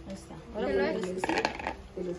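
Crushed ice tipped from a plastic bowl into a plastic bucket of drink, a brief clatter about a second and a half in, after a few spoken words.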